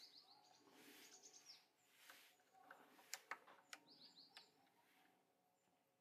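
Near silence, with faint birds chirping in short groups of quick falling high notes and a few faint clicks.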